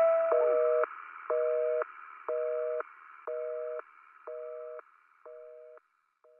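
Telephone busy signal: a two-note beep, about half a second on and half a second off, six times, each quieter than the last, over the faint fading tail of the band's last chord.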